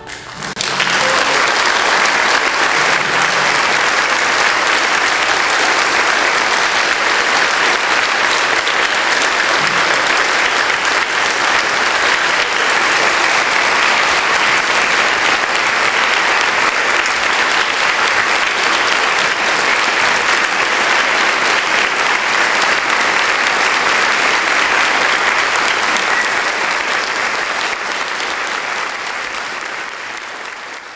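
Audience applauding at length, starting about half a second in as the final choral and orchestral chord dies away, and fading near the end.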